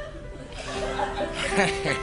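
Laughter swelling up about a second and a half in, over a soft musical underscore of long held notes.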